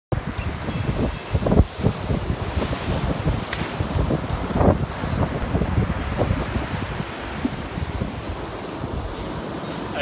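Wind buffeting the microphone over the steady wash of surf breaking on a sandy shore, with gusts strongest in the first half.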